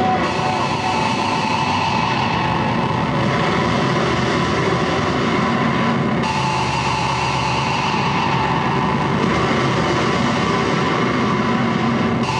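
Live band playing loud, heavily distorted electric guitar through amps, a dense unbroken mass of sound with no break, after a single shouted vocal word at the very start.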